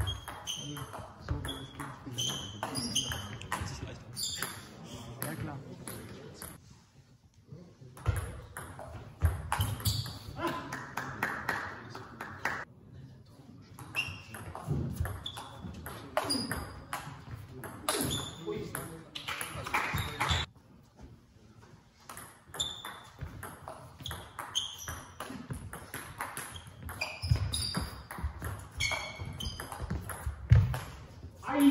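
Table tennis ball clicking sharply off the rackets and the table in quick rallies, each hit with a short high ping, with brief pauses between points.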